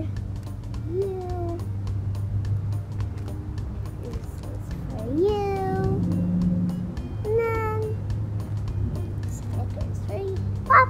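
Three drawn-out, meow-like calls. The first comes about a second in, the longest around five seconds in, rising then holding, and the last near seven and a half seconds. They sit over background music with a steady low hum.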